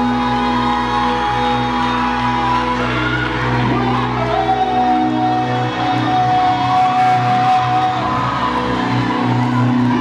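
Live worship music played loud through a hall's sound system, with a male singer on microphone over a band and long held notes.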